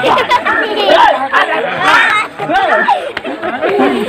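Speech only: loud voices of a man and a woman arguing.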